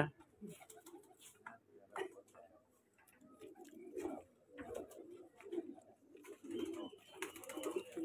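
Domestic pigeons in a loft cooing softly, a run of low coos repeating through the second half.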